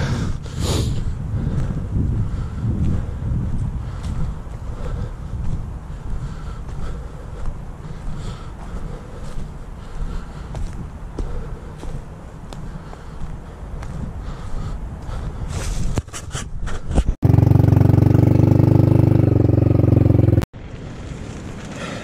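Wind rumbling on the microphone while walking over dry leaf litter, with faint scattered footstep crunches. Near the end a much louder steady drone holds one pitch for about three seconds, starting and stopping abruptly.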